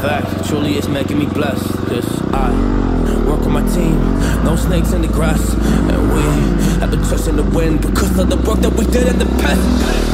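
Dirt bike engine revving up and down, then a hip-hop track with a heavy, steady bass line comes in about two seconds in and plays over it.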